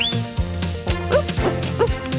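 Cartoon background music with a fast rising whoosh-like sound effect at the start, then two short rising squeaks about a second apart.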